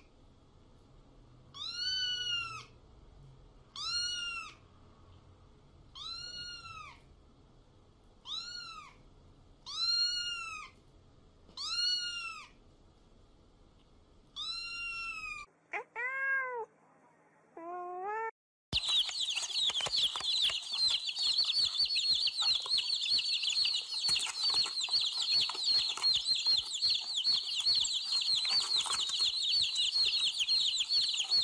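A domestic cat meowing over and over, one meow about every two seconds, then a few lower, shorter meows. About 19 seconds in it gives way to baby chicks cheeping, a dense, continuous high peeping.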